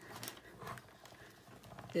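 Faint rolling and creaking of a hand-cranked die-cutting machine as the plates with a die are cranked through its rollers, with a few soft clicks.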